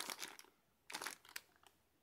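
Faint crinkling of a clear plastic bag with a cable inside as it is handled, in a few brief rustles near the start and again about a second in.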